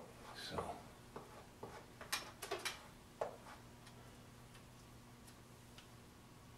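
Light clicks and taps from a sculpting tool and a clay shield being handled against a clay figure, about half a dozen in the first three seconds, then they stop.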